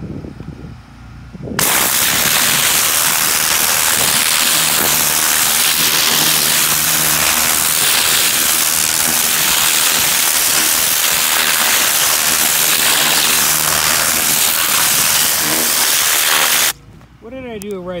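High-pressure water jet blasting into garden soil to rip out weeds, a loud, steady hiss of spray with a low hum beneath it. It switches on abruptly about a second and a half in and cuts off sharply near the end.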